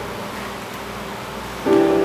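Casio digital piano: a chord dies away between sung lines, then a new chord is struck about one and a half seconds in.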